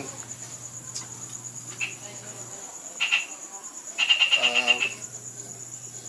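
Night insects, crickets, chirping steadily at a high pitch. A louder rapid chirping trill comes in about four seconds in.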